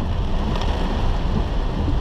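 Heavy rain on a car and its tyres running through floodwater on a flooded road, heard from inside the cabin as a steady rushing noise over a low rumble.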